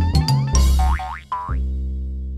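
Animated logo jingle: bouncy music with quick rising cartoon swoops and clicks, landing about one and a half seconds in on a long held low chord that slowly fades.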